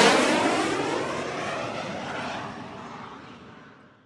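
Whoosh sound effect for an animated logo intro: a loud rush of noise with a sweeping, falling tone that fades steadily over about four seconds.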